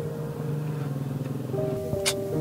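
Background film score of sustained, held chords that shift to new notes about one and a half seconds in, with a short click near the end.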